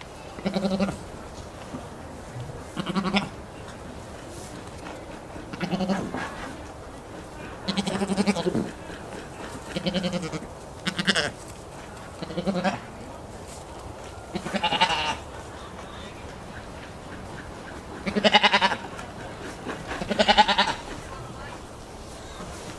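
Goat bleating repeatedly: about ten short calls, each under a second, spaced one to three seconds apart, the loudest two near the end.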